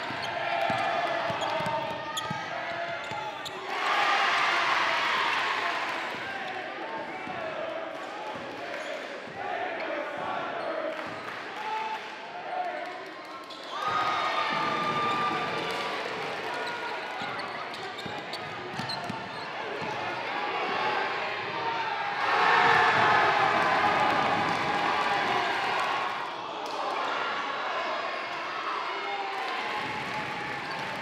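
Live basketball game sound in a gym: a ball dribbling on the hardwood amid the voices of players and spectators. The voices grow louder about four seconds in and again a little past twenty seconds.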